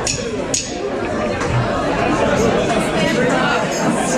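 Indistinct chatter of a crowd in a club between songs, with no music playing and a sharp click about half a second in.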